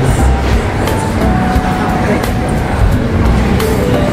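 Busy shopping-mall ambience: background music playing over distant voices, with a steady low rumble throughout.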